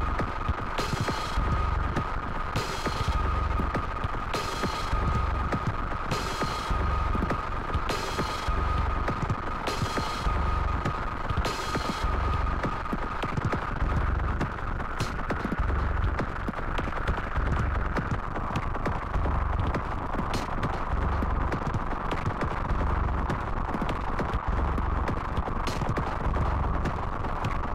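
Live-coded electronic music from TidalCycles: a low bass pulse repeating a little under once a second under a steady high tone. A burst of bright noise hits about every two seconds until roughly halfway through, after which only sparse clicks remain over the bass.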